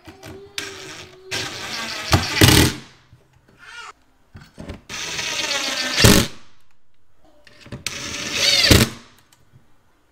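Ryobi cordless drill driving screws through a steel floating-shelf bracket into the wall, in three runs of one to two seconds, each cutting off abruptly.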